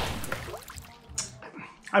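A sip of beer slurped from a glass: a noisy sip that fades within the first half second, then a few faint wet mouth sounds.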